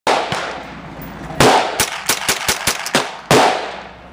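Three loud rifle shots from an AR-style semi-automatic rifle, at the very start, about a second and a half in and near three and a third seconds, each ringing out with a long echo. A string of fainter sharp cracks falls between the second and third. Firing stops after the third shot as the rifle jams.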